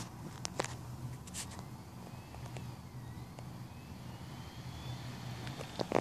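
A steady low machine hum with a few light clicks about half a second to a second and a half in, and a faint whine rising in pitch in the middle.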